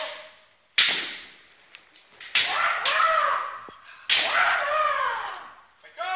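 Kendo fencers' kiai shouts: three loud cries, each starting sharply and trailing off with falling pitch, echoing in a large sports hall, with a single light clack of bamboo shinai between them.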